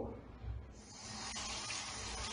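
A bathroom tap running into a sink basin. The water starts under a second in and then flows steadily.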